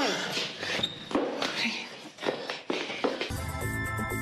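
Footsteps and shuffling as two people walk along a hallway. A music cue with steady bass starts about three seconds in.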